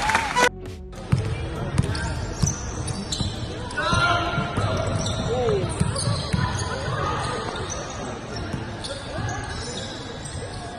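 Live basketball game play: a basketball bounced on the court floor in repeated short thuds, with players' shouting voices and brief squeaks in between.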